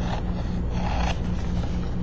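Scissors cutting through a sheet of paper, the loudest stretch of cutting about half a second to a second in, over a steady low hum.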